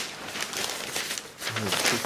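Newspaper rustling and crinkling as a sheet is handled and laid over an inked printing plate, with a man's voice starting near the end.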